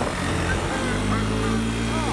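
Honda three-wheeler engine running steadily under throttle as the rear tyres spin in snow during a burnout; a voice exclaims "Oh" near the start.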